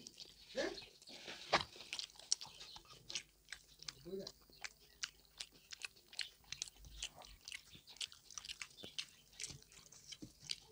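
Close-miked chewing and eating by hand of pork belly and rice: a steady run of short, wet mouth clicks and smacks, irregular and closely spaced, with a sharper smack about one and a half seconds in.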